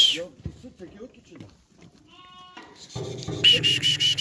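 Flock of goats and sheep bleating: a short cry about two seconds in, then a long, loud, quavering bleat from about three seconds in.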